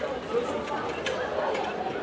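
Indistinct talking and a murmur of voices, with a couple of small clicks.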